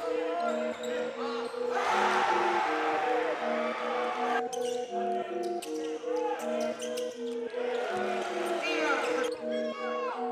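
A basketball bouncing on a hardwood gym floor during game play, with sharp thuds and short squeals mixed under background music that repeats a simple melody throughout.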